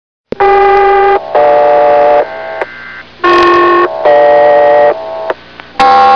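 Fire-station dispatch alert tones played as a ringtone: a buzzy electronic two-note signal sounded three times, each time one long tone followed by a second at a different pitch.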